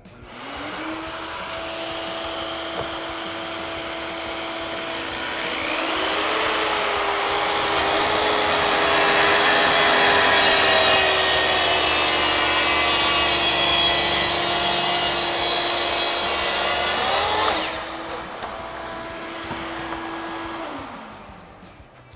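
Kreg plunge-cut track saw starting up and running along its track, cutting through a sheet of plywood. The motor spins up within the first second and runs steadily. It grows much louder for about eleven seconds while the blade is in the cut, then runs free again and winds down near the end.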